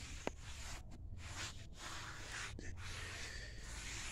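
Faint rubbing of a foam applicator pad wiping tire dressing onto a rubber tire sidewall, a few soft strokes with brief pauses between them and a small click near the start.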